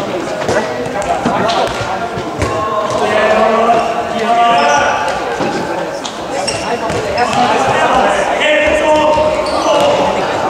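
A handball bouncing on a sports-hall floor, with short knocks, and players calling out over it.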